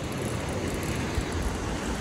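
Surf breaking and washing up a shingle beach, with wind rumbling on the microphone.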